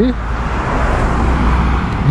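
A car driving past on the asphalt road, its tyre and engine noise swelling to a peak about a second in and easing off, over a steady low rumble.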